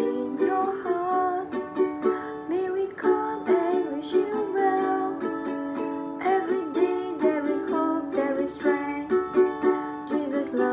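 Ukulele strummed in steady, simple down-strums, playing the chords of a song (D, A7, G) in an even rhythm.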